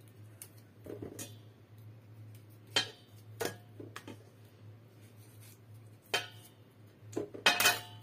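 Scattered knocks and clinks of kitchenware at a stainless-steel sink as tomatoes are handled from a metal colander into a pot: about half a dozen sharp knocks, the loudest near the end, over a steady low hum.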